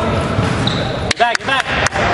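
A basketball bouncing on a hardwood gym floor, a few sharp bounces in the second half, over the chatter of voices in the gym.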